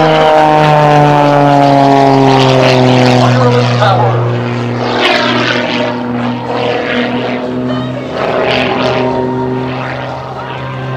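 Extra 300 aerobatic monoplane's propeller engine running loud as the plane passes, its pitch falling over the first four seconds, then holding steadier and a little quieter as the plane pulls up into a climb.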